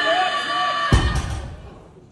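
A loaded barbell with bumper plates comes down onto the deadlift platform about a second in with a single heavy thud, on a missed 305 kg deadlift that his failing grip could not hold. Before it, a voice shouts one long wavering yell that stops at the impact.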